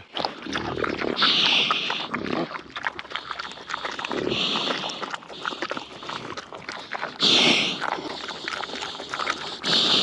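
Idaho Pasture Pig eating feed pellets off the ground: a run of irregular crunching and chewing clicks, broken four times by loud breathy puffs through the snout.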